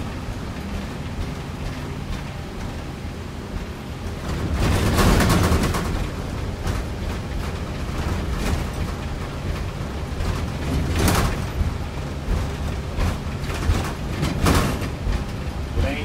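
Bus engine running with road rumble heard from inside the cab while driving at steady speed. A louder rushing swell comes about five seconds in, and sharp knocks and rattles follow a few times later, the loudest about eleven seconds in.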